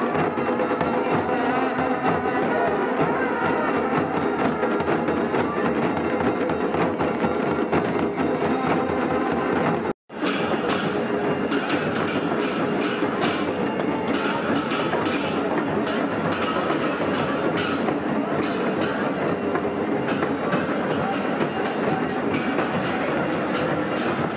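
Traditional deity-procession band of drums and bells playing continuously, with many sharp strikes over held tones. The sound cuts out for a split second about ten seconds in.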